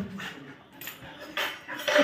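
Labrador retriever breathing hard in short, separate puffs while tugging on a rope in play.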